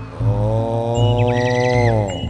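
A man's voice holding one long chanted note through a microphone, bending down in pitch at the end. It sits over a steady low hum, and a higher wavering sound joins briefly around the middle.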